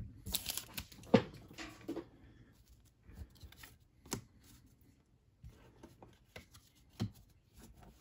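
Baseball cards being handled and set aside on a tabletop: a few sharp taps and clicks, the loudest about a second in, with faint rustling between them.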